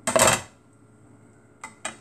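Metal cookware clanking: a brief loud clatter as a pot or its lid is handled, then two light clicks near the end.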